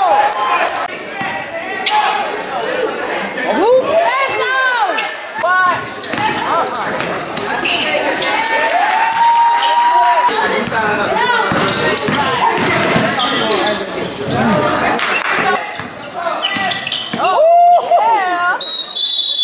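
Basketball game play in a gymnasium: a ball bouncing on the hardwood court amid players' and spectators' voices calling out, echoing in the large hall.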